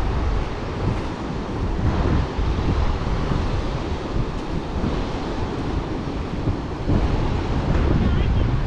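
Wind buffeting the microphone in an uneven low rumble, over the steady wash of ocean surf breaking on the beach.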